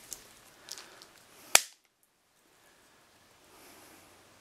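A scissor-type PEX cutter biting through a still-frozen length of PEX-B pipe: a couple of faint clicks as the jaws close, then one sharp, loud snap about one and a half seconds in as the blade shears through.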